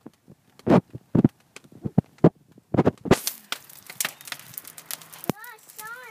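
Wood fire crackling and popping in a stone fireplace, coming in about three seconds in as a steady hiss dotted with quick sharp pops. Before it, a few short knocks.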